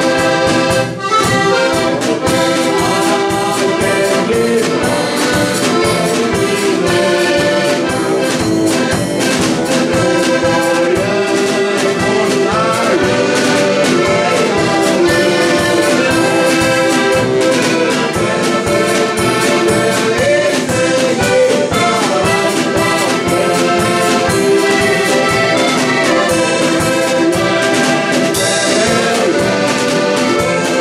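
Three heligonkas (Styrian diatonic button accordions) playing a folk tune together, reedy chords and melody over bass notes on a steady beat.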